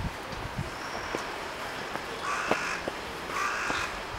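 A crow cawing twice in the second half, two calls each about half a second long and about a second apart.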